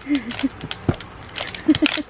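Plastic rings on a baby's panda rattle toy clicking and clattering as they are knocked together, in a quick run of irregular clicks.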